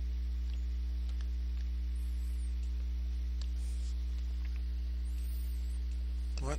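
Steady low electrical mains hum with a few higher overtones, unchanging throughout, with a few faint scattered ticks.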